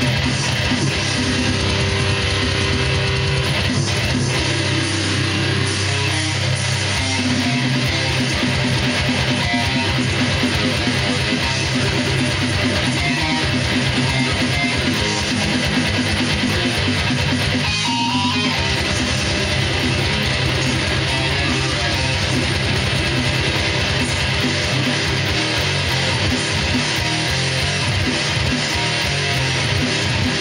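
Electric guitar playing the riffs of a metal song without a break, with stretches of fast repeated picked notes.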